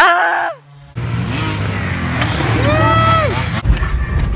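A brief shout or laugh, then a car running on the move, heard from inside the cabin as a steady low engine and road rumble. A drawn-out voice rises and falls over it near the end.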